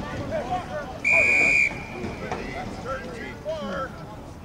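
A rugby referee's whistle, one short, shrill blast about a second in that stops play at a scrum, over the shouts of players.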